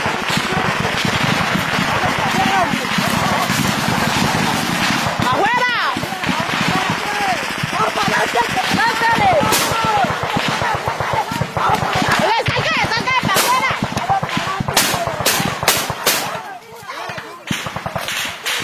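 Rifle gunfire crackling in rapid bursts, with men shouting over it; several sharp, separate shots ring out in the second half.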